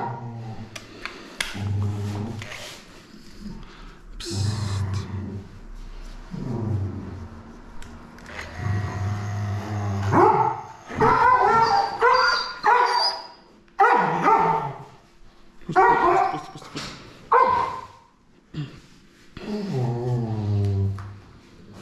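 An old, blind dog growling and barking while its matted coat is clipped: long low growls in the first half, then louder, choppier barks and snarls from about halfway through, an aggressive protest at the handling.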